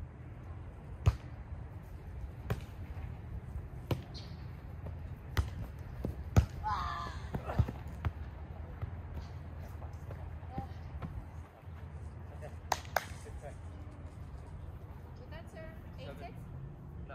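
Volleyball being struck by players' hands and forearms during a rally, sharp smacks about every second and a half, the loudest about six seconds in. A short shout follows that hit, and two quick smacks come close together near the end.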